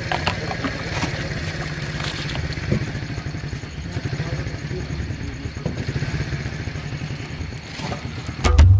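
An engine running steadily in the background as a low rumble, with a few light clicks.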